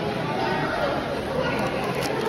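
Many people talking at once in a large hall: the steady chatter of a school lunch crowd, with no single voice standing out.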